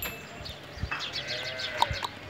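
A farm animal's bleating call, about a second long, rising and then falling in pitch, starting about a second in; small birds chirp throughout, and a sharp knock sounds near the end.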